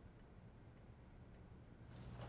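Near silence: room tone with a faint, even ticking, a little under two ticks a second.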